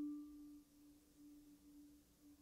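A struck marimba note ringing away: its higher tone fades out about half a second in. A faint low tone lingers, gently wavering.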